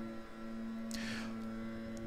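Leaf blowers outside running steadily, heard as a faint, even droning hum through the room, with a brief hiss about halfway through.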